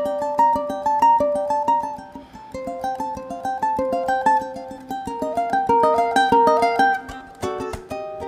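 Ukulele played fingerstyle in a fast run of plucked notes, a melody moving over a steadily repeated low note, in an alternating-thumb pattern.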